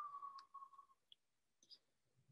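Near silence with a few faint clicks and a faint tone that glides down in pitch over the first second.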